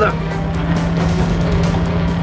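Action-film soundtrack: score music with a steady held low note, mixed over the rumble of heavy trucks driving at speed.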